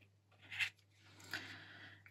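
Uni Posca acrylic paint marker drawing grass strokes on watercolour paper: a short, faint scratch of the nib about half a second in, then a longer, quieter stroke from a little past one second.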